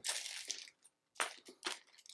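Small plastic bag of game tokens picked up and handled, crinkling, followed by a few light clicks as its contents shift.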